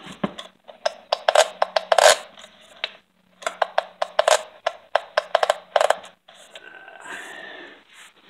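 Stihl MS660 chainsaw pulled over by its recoil starter twice without starting, each pull a quick run of clicks and rasps. The clicking is one the owner later traces to a coil wire caught in the flywheel.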